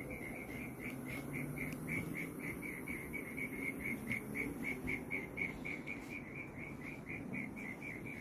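An insect chirping at night: a steady, even pulse repeating about four times a second, with a faint low background hum underneath.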